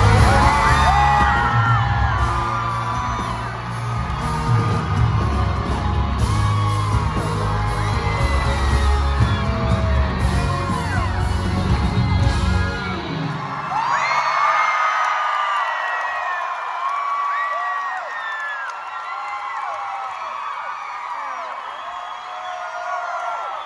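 A rock band playing the end of its last song live, with loud bass, over a crowd cheering and screaming. The band stops about two-thirds of the way through, leaving the audience whooping and screaming.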